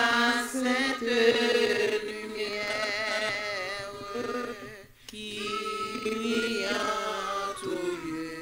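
A woman singing a slow hymn unaccompanied into a microphone, in long held notes with vibrato. There is a brief pause for breath about five seconds in.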